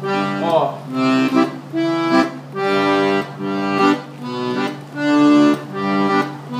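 Accordion playing a run of separate notes, each held from a fraction of a second to about a second, over a steady low tone. It is most likely the bass run ('baixaria') played on the bass buttons.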